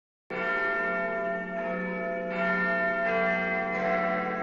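Ringing bell tones open a pop song's backing track. Starting a moment in, a new stroke comes about every three quarters of a second, each ringing on under the next.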